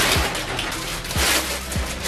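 Plastic packaging crinkling and rustling as a plastic mailer bag is rummaged through and a garment in a clear plastic bag is pulled out, over background music with a low, regular beat.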